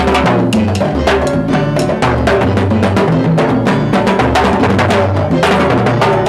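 Latin mambo orchestra playing live: a fast, dense run of drum and timbale strokes over a bass line that moves in short steps.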